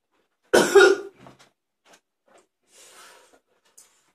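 A young man coughs once, hard, about half a second in, from the burn of a very hot Komodo Dragon chilli, followed by a faint breathy exhale.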